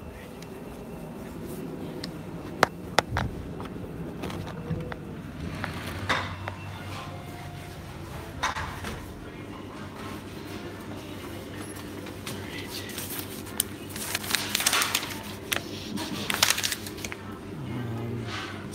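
Fast-food restaurant interior ambience: faint background music and a low hum, with clinks of dishes and a couple of sharp clicks early on. Rustling from the phone rubbing against a fleece jacket comes near the end.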